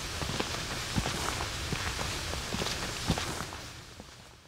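Footsteps walking along a path with light rustling and a few sharper knocks, fading away near the end.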